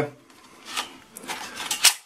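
Plastic phone holder of the FQ777 FQ35 drone's transmitter being pulled out of the controller body: a stiff sliding scrape with a few rattles, ending in a sharper click near the end.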